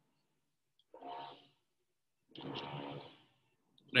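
A man's breathy, partly voiced sounds at the microphone: a short one about a second in and a longer one from about two and a half seconds in, in a pause between spoken phrases.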